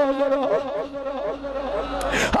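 A steady buzzing hum holding one pitch, with a man's voice wavering faintly under it in a drawn-out tone.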